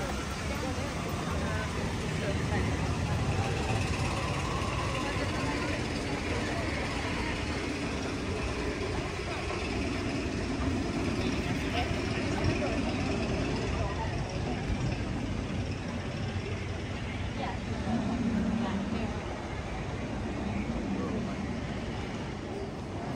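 Outdoor walking ambience: indistinct voices of people passing by over a steady low rumble, with footsteps on pavement.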